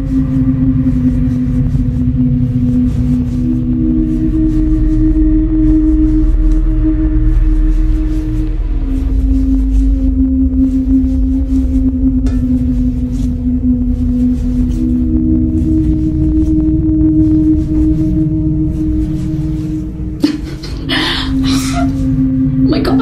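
Eerie ambient background music: long held low drone notes that step to a new pitch every few seconds over a steady low rumble, with a brief noisy burst near the end.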